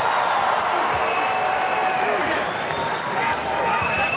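Large arena crowd cheering and shouting in a steady din during a heavyweight boxing bout.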